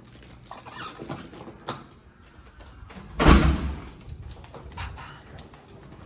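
Hotel room door being opened and swinging shut with a heavy thud about three seconds in, with a few small clicks of the handle before it.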